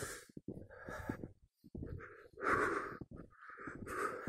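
Heavy, labored breathing of a person climbing through snow, a breath about every second, the loudest a little past the middle: breathlessness from hard walking at high altitude.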